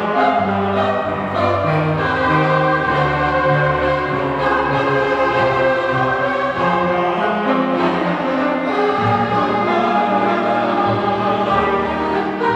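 Mixed choir of women's and men's voices singing sustained, shifting chords, accompanied by a string ensemble.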